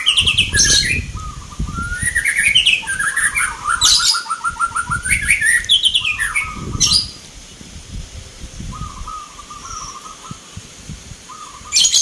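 Zebra doves (perkutut) singing their rhythmic, stuttering coo phrases, several songs overlapping with higher chirps mixed in. The song is loud for the first seven seconds or so, then quieter.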